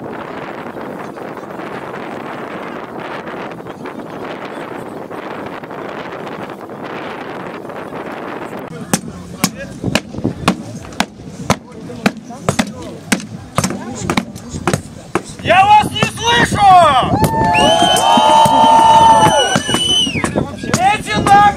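Steady wind noise on the microphone, then a run of sharp, separate knocks about twice a second, followed near the end by loud shouting from several voices at once.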